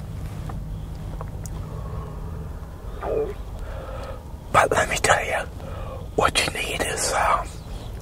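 A man talking in a low, half-whispered voice, starting about three seconds in, in short bursts over a steady low hum.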